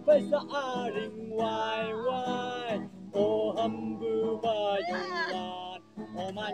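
A man singing to his own acoustic guitar, with long held notes that slide up and down in pitch, broken by short pauses.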